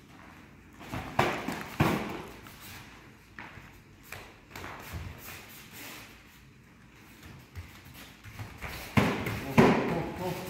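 Thuds from taekwondo sparring: kicks and bare feet striking padded protectors and foam mats. Two sharp hits come about a second in, there are lighter taps and shuffles in the middle, and a quick flurry of impacts comes near the end.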